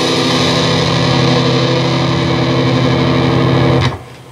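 Electric guitar through heavy distortion: the final notes of the phrase are struck once and ring out steadily, then are muted abruptly just before the end.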